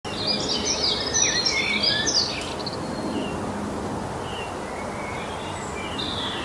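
Birds chirping over a steady outdoor hiss, a nature ambience. The chirps come thick for the first couple of seconds, then only now and then.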